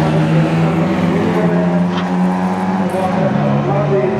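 Škoda Favorit rally car's four-cylinder engine held at steady high revs through a corner. Just after three seconds in, its note drops to a lower pitch.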